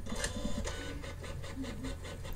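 Printer sound effect: a printer mechanism printing, a quick, even run of clicks.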